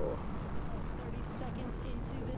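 Steady low roar of the Falcon 9 first stage's nine Merlin engines during ascent, heard through the launch broadcast's audio.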